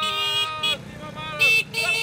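Car horns honking, a held blast at the start and a short loud one about a second and a half in, mixed with people shouting.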